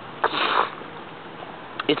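A man sniffing once through his nose, a short breathy burst about a quarter of a second in, while he is still getting over a cold.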